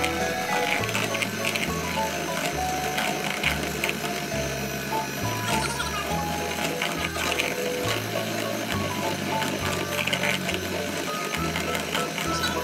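Background music with a stepping bass line, over the steady whir of an electric hand mixer whose twin beaters whip a white mixture in a steel bowl.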